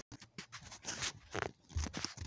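Handling noise from a phone being carried and moved: a string of short, irregular rustles and bumps on the microphone, the two loudest about one and a half and two seconds in.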